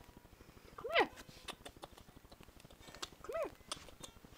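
A woman's voice giving two short, high-pitched calls that rise and fall, coaxing a pet, with a few light clicks and rustles in between.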